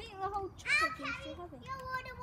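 A child's voice calling out without clear words, with a high rising squeal near the middle.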